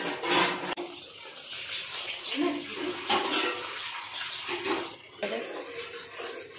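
Thick chicken curry boiling in a clay pot: a steady, dense bubbling hiss, with a brief lull near the end.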